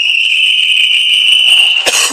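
A single long, steady, high whistle blast of about two seconds, signalling a stop in the karate bout, with a sharp slap-like crack just as it ends.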